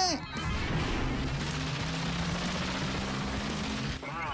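Cartoon background music with a steady rushing sound effect over low held notes, just after a high shout falls away at the start.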